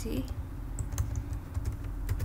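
A handful of separate keystrokes on a laptop keyboard, scattered clicks with a short cluster of them near the end.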